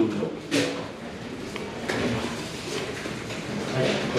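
Eating-house room sound: faint background voices with two short knocks of dishware, a sharp one about half a second in and a lighter click near two seconds.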